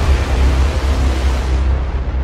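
Cinematic logo-reveal sound effect: a loud, deep rumble under a rushing hiss, the hiss thinning out near the end while the rumble carries on.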